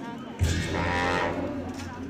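Tibetan monastic ritual music for a masked cham dance: long horns sound a low held note that starts with a sharp struck accent about half a second in and fades toward the end.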